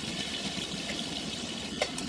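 Pork pieces sizzling steadily in hot oil in a cast-iron kazan, with a slotted spoon stirring through them. There is a faint click near the end.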